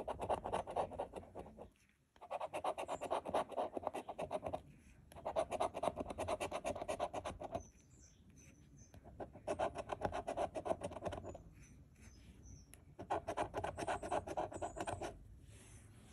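A coin scratching the coating off a scratch-off lottery ticket's bonus spots, in five bursts of rapid rasping strokes with short pauses between, one burst per spot uncovered.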